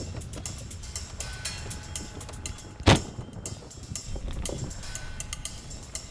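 Steady low rumble of a Land Rover on the move, with scattered light rattles and one loud knock about three seconds in.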